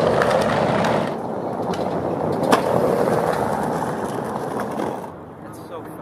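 Skateboard wheels rolling on pavement, a steady grinding rumble, with one sharp click from the board about two and a half seconds in. The rolling sound fades near the end.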